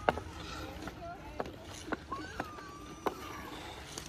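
A handful of sharp knocks and clicks on the ice of a frozen lake, about five in four seconds, the first the loudest, typical of hockey sticks, pucks and skate blades striking the ice. Faint distant voices carry between them.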